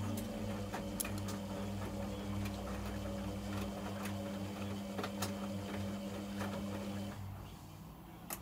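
Logik L712WM13 front-loading washing machine tumbling a wet load in its rinse: the drum motor runs with a steady hum, with scattered clicks from the turning drum and laundry. The motor stops about seven seconds in and the drum comes to rest.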